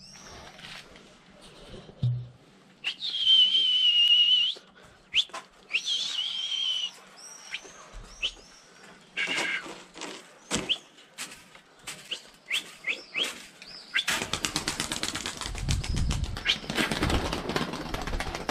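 A person whistling two long notes, the first held steady for over a second, the second shorter and sliding, to drive pigeons out of their loft, with scattered clicks and chirps between. From about fourteen seconds in, a long spell of fluttering and rustling as the pigeons beat their wings in the aviary.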